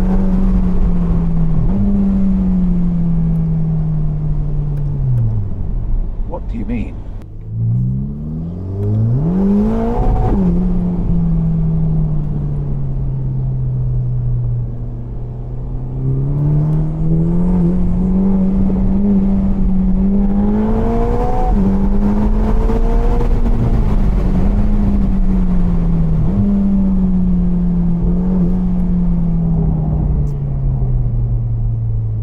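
Ferrari Roma Spider's 3.9-litre twin-turbo V8 heard from the open cockpit while driving. The engine note sinks as the revs drop, then climbs steeply twice about eight and ten seconds in. It keeps rising and falling with the revs through the rest, over a steady low rumble of road and wind.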